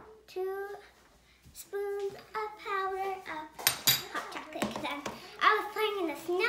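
A young girl's voice singing to herself in held, wavering notes. A few sharp clinks come about four seconds in and again near the end as a mug and a hot chocolate tin are handled on the stone counter.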